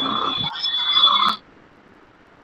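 A steady high-pitched electronic tone over hiss on a video-call audio line, with a short break about half a second in, cutting off suddenly about a second and a half in to a faint noise floor.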